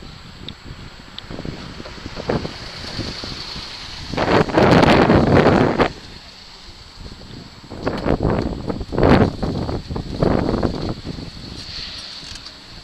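Wind gusting over the camera's microphone, buffeting it in loud, rough bursts: one lasting about two seconds starting about four seconds in, then several shorter ones in the last few seconds.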